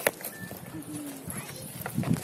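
Indistinct voices of people talking nearby, with a few sharp clicks near the start and again near the end.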